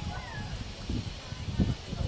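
Indistinct voices at a distance, with a brief high falling call shortly after the start.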